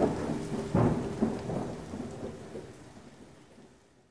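Thunder rumbling over steady rain, with louder rolls about a second in, the whole storm fading away steadily.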